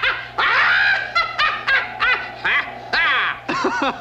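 A cartoon witch's shrill, high-pitched cackling laugh, coming in several broken bursts.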